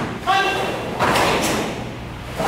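Karate uniforms snapping and bare feet thudding on a foam mat as a group performs a kata in unison, with sharp strikes about a quarter second and a second in, echoing in the hall. A short pitched shout is heard near the first strike.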